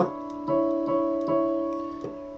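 Digital piano keyboard sounding a sixth, two notes played together. It is struck about half a second in and left ringing and slowly fading, with a couple of quieter notes touched soon after.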